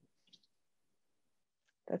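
Near silence: room tone, with one faint short click about a third of a second in. A woman starts speaking just before the end.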